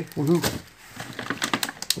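Plastic food packaging crackling and rustling as it is handled, a run of irregular sharp clicks that grows busier in the second half.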